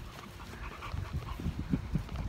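A dog panting in short, uneven breaths.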